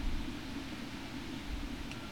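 Steady outdoor background noise: a low rumble with an even hiss, and a faint click near the end.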